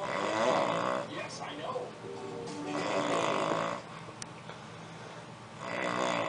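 A sleeping man snoring, three snores about three seconds apart.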